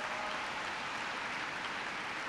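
A large audience applauding steadily.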